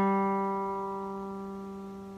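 Crafter acoustic guitar's open third (G) string, plucked once just before and ringing on as a single sustained note that slowly fades.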